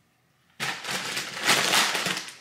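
Loud, close rustling and crinkling of handled material, probably a skin-care wipe or its packaging, starting about half a second in and lasting under two seconds.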